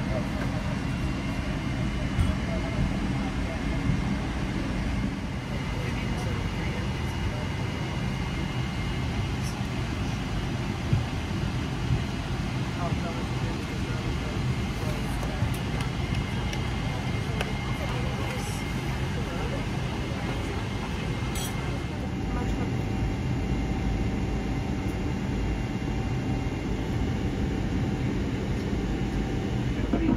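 Steady airliner cabin ambience at the gate: a continuous ventilation hum with voices murmuring in the background.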